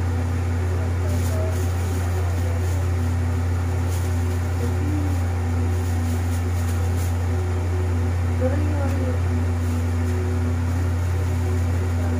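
A steady low hum at an even level, with faint voices murmuring softly in the background.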